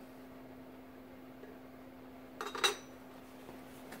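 The machined steel top plate of a 68RFE overdrive clutch pack being set down onto the clutch pack: a brief metallic clatter and clink with a ringing tail about two and a half seconds in.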